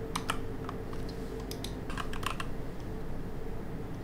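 Typing on a computer keyboard: irregular key clicks, with a quick run of them about two seconds in.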